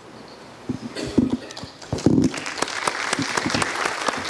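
Audience applauding, the clapping swelling about two seconds in.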